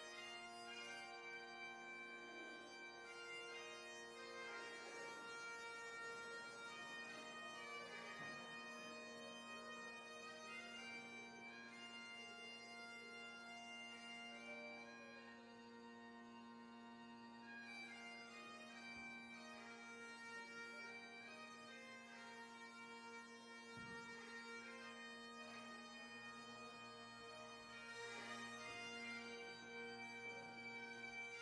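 Great Highland bagpipes playing a tune over steady, unbroken drones.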